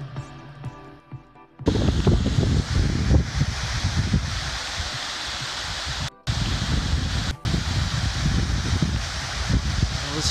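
Soft background music for about the first second and a half, then a sudden switch to the loud, steady rush of water pouring down a stepped stone cascade, with an uneven low rumble underneath. The rush breaks off for an instant twice, a little past the middle.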